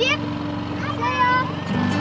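Children's voices calling out goodbyes over a steady low hum of held tones.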